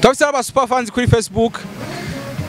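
A man talking into a handheld microphone, with a steady low drone underneath that shows through in the pauses, most plainly near the end.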